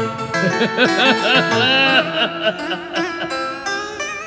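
Live accompaniment for a cải lương vọng cổ song: a plucked string instrument plays a melodic fill of bent, wavering notes between the singer's lines.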